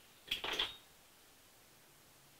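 A quick cluster of small clicks and knocks about a third of a second in, lasting under half a second. It comes from hard objects being handled at a fly-tying bench.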